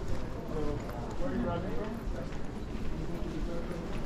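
Indistinct voices of people talking in a large airport hall, over a steady low hum, with footsteps as people walk through.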